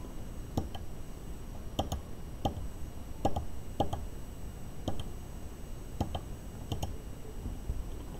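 Small tactile pushbuttons on a breadboard being pressed: about ten short, sharp clicks, unevenly spaced, some in quick pairs.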